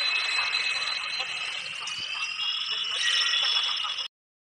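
Passenger train rolling past, a dense rushing noise with a shrill, steady, high-pitched squeal over it whose pitch drifts upward in the last second or two. It cuts off suddenly at the end.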